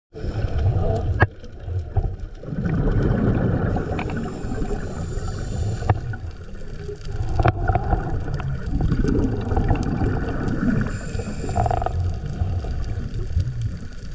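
Underwater sound picked up by a camera in a waterproof housing as it moves over a coral reef: a continuous low, muffled rumble of moving water that swells and ebbs, with scattered sharp clicks.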